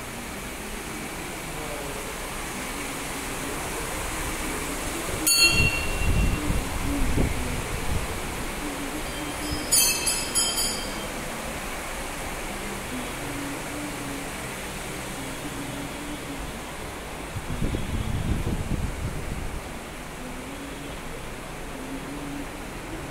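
Temple interior ambience: a steady background murmur, with two short metallic clinks about five and ten seconds in and low rumbling bumps after the first and near the end.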